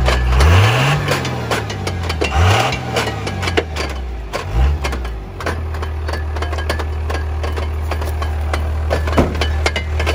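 Dodge Ram pickup engine blipped three times in quick rises and falls of pitch, then settling to a steady idle, with scattered sharp clicks and snaps over it.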